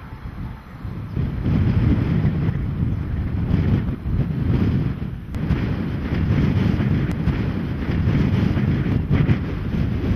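Gusty wind buffeting the camera microphone, a low, uneven rush that swells about a second in and keeps surging.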